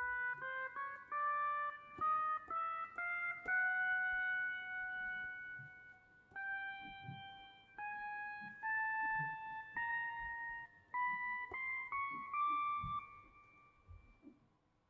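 Autosampled pedal steel guitar notes played one at a time from the pads of an Akai MPC Live 2 Retro keygroup program, climbing in pitch step by step. The first few come quickly, one is then held for a couple of seconds, and the rest climb more slowly, about a second apart.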